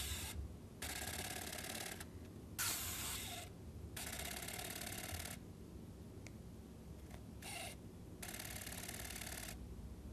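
Electric finger motors of a Touch Bionics prosthetic hand whirring in repeated bursts of about a second each, with short pauses between. This is the hand's pulsing grip: each pulse closes the fingers tighter onto a soft ball.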